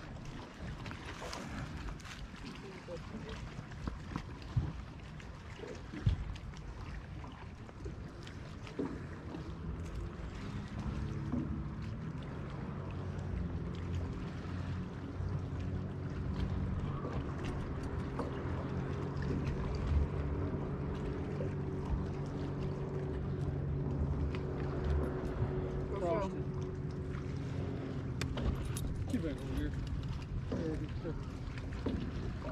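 A steady engine hum sets in about a third of the way in and holds to the end, over wind noise. There are a few sharp knocks earlier.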